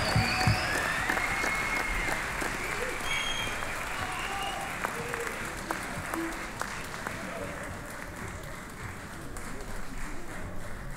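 Audience applauding at the end of a piece, the clapping dying away gradually.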